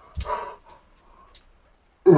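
A man's short strained grunt-like exhale of effort, with a soft thud at its start, followed by a few faint clicks.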